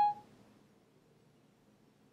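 iPhone 4S Siri dictation tone: one short electronic beep right at the start, marking the end of listening to the dictated phrase, then near silence.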